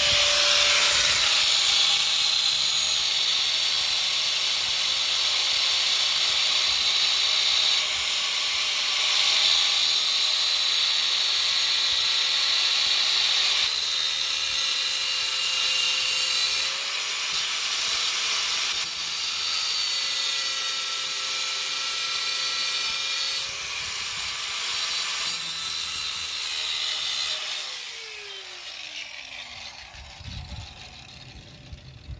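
Angle grinder running under load as its disc grinds slots into the heads of the steel tamper-proof bolts holding a VW ECU, so they can be turned out with a flat-head screwdriver: a steady high motor whine over the hiss of the disc on metal, the load and pitch shifting several times as it bites. Near the end the grinder is switched off and its whine falls away as the disc spins down.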